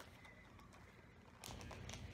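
Near silence: room tone, then faint rustling and small clicks of handling that begin about one and a half seconds in.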